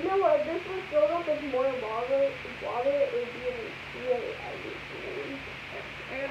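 A girl humming a wavering, wordless tune, the pitch rising and falling, tapering off about four seconds in.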